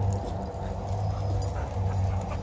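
A dog whimpering faintly over a steady low hum.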